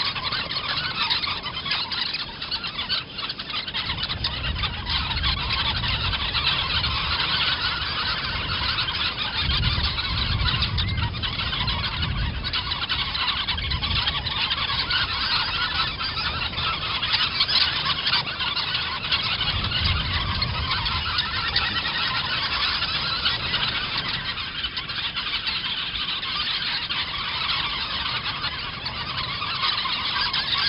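A large flock of flamingos calling continuously in a dense honking chatter, with a low rumble swelling and fading a few times.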